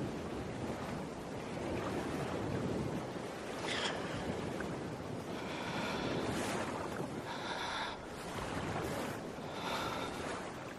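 Rushing river water, a steady rush, with wind buffeting the microphone.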